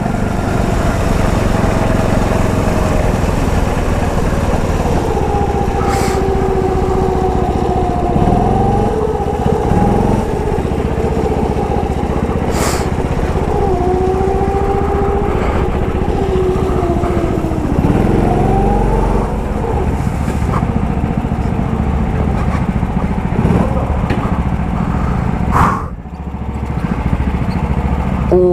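Rental go-kart's small petrol engine running under way, its pitch rising and falling as the throttle is opened and lifted through the corners, with a couple of sharp knocks along the way. Near the end the engine sound drops away as the kart slows.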